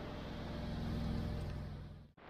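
A vehicle engine running with a steady low hum, swelling a little toward the middle and easing off again.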